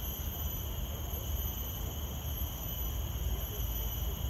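Steady high-pitched insect chorus, unbroken, over a low rumble.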